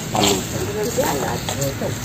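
A person's voice speaking or calling out in short phrases, over a low steady hum.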